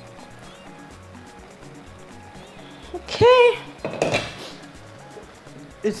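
Quiet background music, with a short voice-like pitched sound about three seconds in and a brief clatter of a metal pot and its lid just after.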